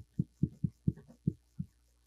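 Dull low knocks from a whiteboard on its stand as a marker is pressed against the board while writing, about seven in two seconds at an uneven pace.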